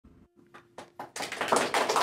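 Applause: a few scattered hand claps about half a second in, swelling into dense clapping in the second half.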